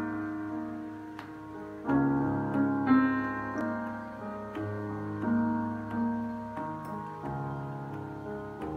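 Roland BK-5 arranger keyboard played with a piano voice: slow, sustained chords, a new chord struck about once a second and left to fade before the next.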